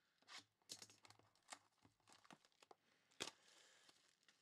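Faint handling and opening of a cardboard trading-card box: the seal slit and the box scraped, with several sharp clicks and a short tearing rasp about three seconds in.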